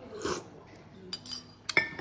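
A metal spoon and a small cut-glass cup clinking: a short sip from the spoon, then two clinks, the second one sharp and ringing, as the glass cup is set down on a plate.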